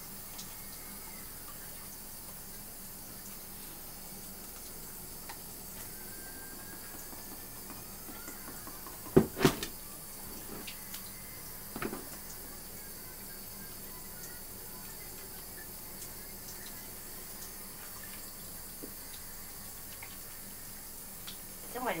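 Steady low hiss, with a few short knocks or clicks: the loudest about nine seconds in, and another about twelve seconds in.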